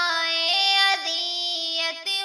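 A high voice singing a slow, held melody of an Urdu devotional nazam, stepping to a new note several times.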